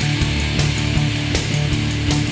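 Studio recording of a rock song with a steady beat, about three hits a second over sustained low notes.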